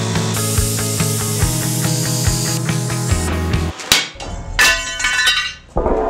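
Background music with a steady beat, which breaks off a little over halfway through for a few sharp hammer blows on steel with a metallic ring, knocking the plasma-cut piece free of the steel plate.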